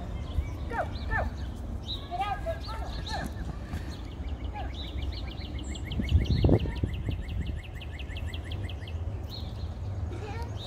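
Birds calling outdoors: scattered short chirps, then one long fast trill of about eight notes a second lasting about five seconds. A steady low rumble of wind on the microphone runs underneath, with a louder low burst about six seconds in.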